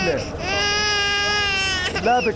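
Infant crying: a long wail ends just after the start, then after a short break another long wail is held at a steady pitch for about a second and a half.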